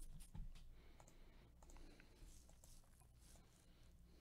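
Faint computer mouse clicks, a few scattered single clicks over near silence.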